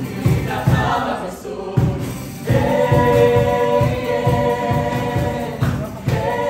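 A group of voices singing together over music with a steady beat; about two and a half seconds in they hold one long chord until just before the end.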